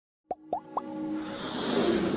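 Logo intro sound effects: three quick pops, each rising in pitch, about a quarter second apart, followed by a musical swell that builds steadily in loudness.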